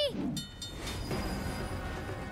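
Cartoon train sound effect of a locomotive running along the track, under background music.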